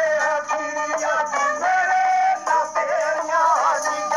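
Live folk music: a reedy wind instrument plays a sustained, wavering melody, with drum strokes beneath.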